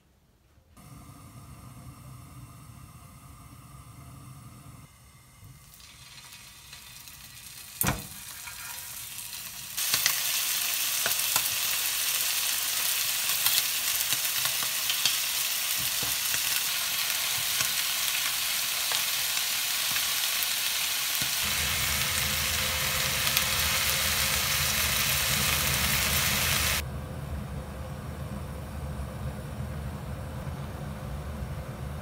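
Parboiled chicken pieces sizzling in a frying pan on a gas hob, a loud steady hiss that starts suddenly about ten seconds in and drops away a few seconds before the end. A single sharp knock comes just before it.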